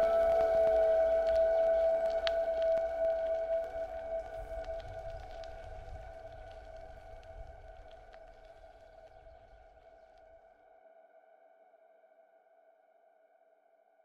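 Ambient background music ending on one long held chord that slowly fades out to near silence.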